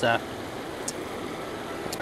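A man's brief hesitant "uh", then a pause of steady outdoor background noise with a faint click about a second in and another at the end.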